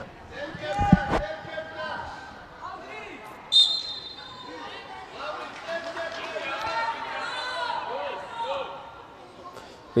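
Players' voices calling out across an indoor football hall, with a ball struck hard about a second in. A few seconds later comes a short, high-pitched whistle blast.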